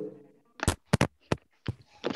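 A handful of short, sharp clicks or knocks, about five spread over a second, with two close together about a second in.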